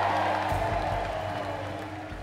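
Background music of low sustained notes under the cheering and applause of a large rally crowd, which fades away across the two seconds.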